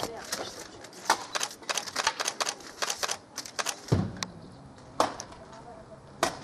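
Tarhana dough discs being picked up, turned and laid down on a reed drying mat, making irregular crisp clicks and taps about three a second. A duller knock comes about four seconds in.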